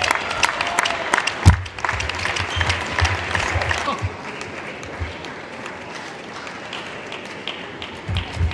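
Audience applause, many hands clapping, dying away after about four seconds, with one loud thud about a second and a half in.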